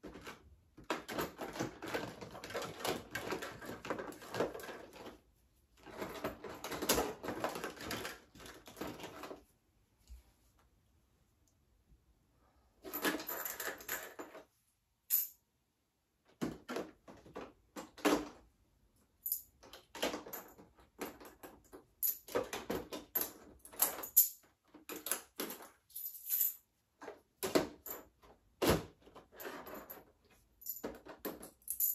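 Small toys and odds and ends being rummaged through and picked out of a plastic storage bin: stretches of rattling and rustling, a pause partway through, then a run of short separate clicks and clinks of small hard items.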